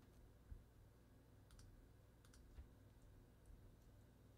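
Near silence broken by about five faint, scattered clicks from computer use: a mouse and keys being worked while slides are pulled up.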